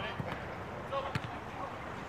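A volleyball being struck twice, two short dull thuds about a second apart, over faint distant voices of players.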